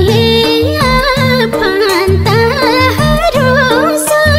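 Nepali lok dohori folk song: a woman singing a wavering, ornamented melody over a pulsing low bass beat and folk accompaniment.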